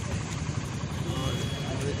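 Steady low rumble of vehicle engines idling, with a man's voice starting again in the second half.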